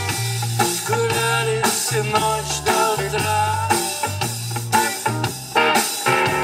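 A live rock band playing an instrumental passage: electric guitar and bass guitar over a Tama drum kit with a steady beat.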